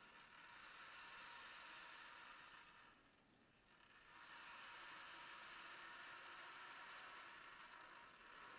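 Ocean drum tilted so the beads inside roll across the drumhead, a soft wave-like rush. It fades away about three seconds in and swells again a second later.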